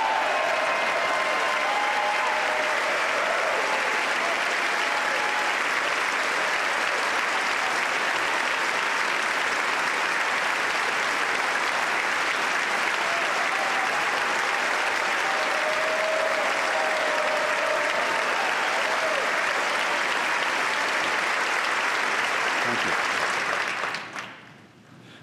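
Large audience applauding steadily, a long ovation that dies away shortly before the end.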